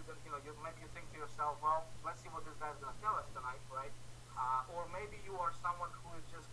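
A man talking continuously over a web video call, his voice thin and cut off in the highs, with a steady low hum underneath.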